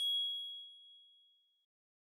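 A single bright electronic ding, a logo chime, struck once and fading out over about a second and a half.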